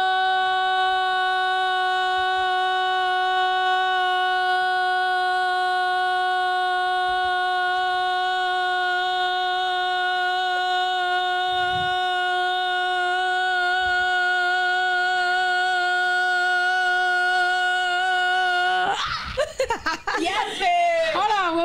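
A woman's voice holding a single steady, high note for about twenty seconds, as long as she can while she is timed. It breaks off near the end into laughter.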